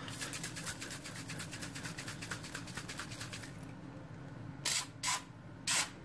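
An aerosol can of Citristrip paint stripper being shaken, a rapid, even rattle of about ten clicks a second lasting three and a half seconds. After a brief pause come three short hisses as the stripper is sprayed.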